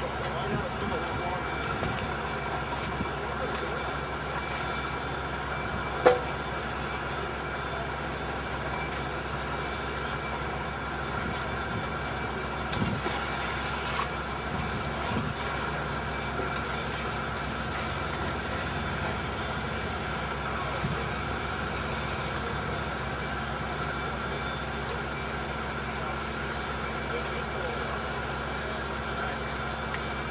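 Steady drone of construction-site machinery engines running, with a single sharp knock about six seconds in and a few fainter knocks later.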